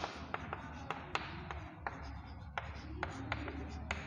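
Chalk writing on a blackboard: a run of sharp taps and short scratches as the chalk strikes and drags across the board letter by letter, over a low steady hum.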